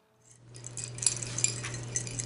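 Light clinking and rattling of tableware, scattered small clicks, over a steady low hum that starts a fraction of a second in.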